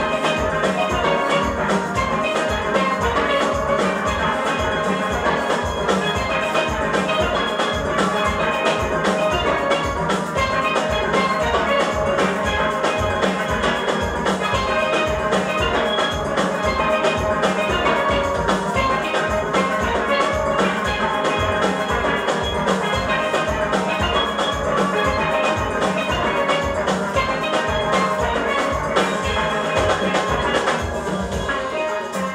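A steel orchestra playing: many steelpans ring out the melody and chords together over a steady, even beat from the drums.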